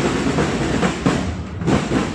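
Parade drums beating a steady marching rhythm, about two beats a second.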